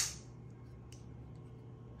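Kubey Raven folding knife's blade flipping open on its ceramic ball bearings and snapping into lock with one sharp click right at the start, followed by a couple of faint ticks from handling.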